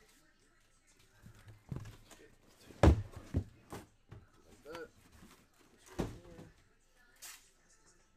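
Cardboard product boxes being handled: a string of knocks and thumps as boxes are lifted out of a cardboard case and set down, the loudest about three seconds in and another about six seconds in.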